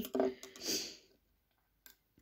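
The tail of a woman's voice and a breath, then near silence broken by one small sharp click near the end: a metal crochet hook laid down on a table.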